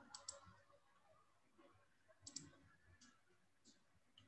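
Near silence broken by a few faint, short computer-mouse clicks: a pair right at the start, another pair a little over two seconds in, and a couple of fainter ones later.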